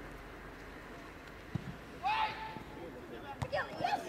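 Live sound from a soccer match: players shouting on the pitch, one shout about halfway and more near the end. Between them come a dull thud and a sharp knock, over a low steady rumble.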